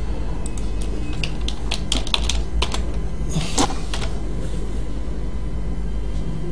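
Computer keyboard keystrokes and clicks, a quick run of them in the first half, with one fuller click a little later, over a steady low hum.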